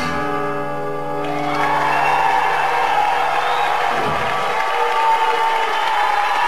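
A live rock band ends a song on a held chord that rings out for about a second, then the crowd cheers and applauds with whoops.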